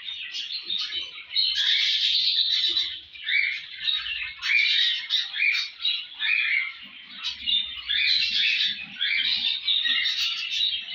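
A room of caged small parrots, budgerigars among them, chattering and chirping all at once: a dense, continuous stream of overlapping high, short calls and squawks.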